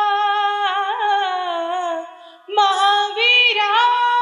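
A young man's singing voice in a Jain devotional song, holding long notes in a high register with small wavering turns. The voice stops briefly about halfway through, then comes back on another held note.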